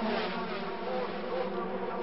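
A pack of 125cc two-stroke racing motorcycles, mostly Honda RS125s, running at racing speed. Several engine notes overlap and waver slightly in pitch.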